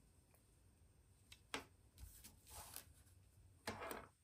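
Near silence, with a few faint clicks and rustles from hands handling a Flipper Zero handheld as it is switched on.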